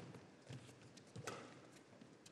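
Badminton rackets striking the shuttlecock in a fast doubles exchange: two faint hits, the second clearer, about three-quarters of a second apart.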